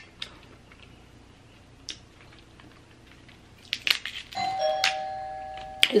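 Electronic two-tone ding-dong doorbell chime about four seconds in: a higher tone, then a lower one, both ringing on and fading slowly. A few sharp clicks come just before it.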